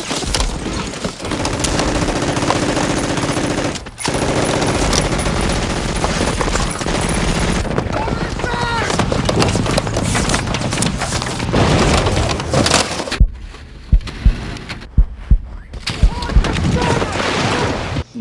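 Battlefield gunfire: sustained automatic weapon fire, with several sharp single shots standing out against a quieter background a few seconds before the end.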